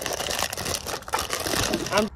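Thin plastic packaging crinkling and rustling as a wrapped wooden palette and painting tool set is handled and pulled open by hand, a dense run of irregular crackles.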